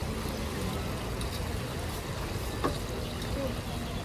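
Chicken cutlets deep-frying in a large vat of hot oil, a steady sizzle, with one short metallic clink of tongs about two-thirds of the way in.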